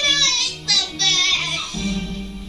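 A child's high-pitched voice cries out in two long, bending bursts over background music, about a second each.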